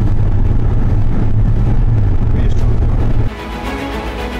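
Low, steady engine and road drone heard from inside a car's cabin at highway speed, with the driver lightly on the gas. About three seconds in it cuts off abruptly and background music takes over.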